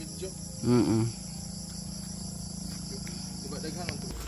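Insects trilling steadily at a high pitch, with a brief spoken utterance about a second in.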